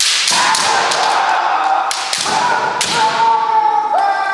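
Bamboo shinai clacking together and striking armour in a quick exchange, several sharp cracks over the first three seconds. Long, loud kiai shouts from the kendoka run through them.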